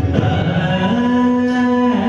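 Carnatic vocal music for a Jathiswaram: a singer glides up and holds one long sung note over steady accompaniment.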